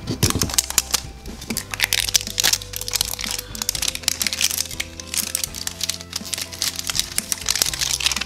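Crinkly plastic wrapping of an LOL Surprise ball being peeled and pulled open by hand: a dense run of crackles and crinkles, over steady background music.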